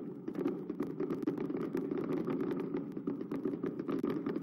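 Firecrackers going off outside in a long, continuous crackle of rapid pops over a dense din.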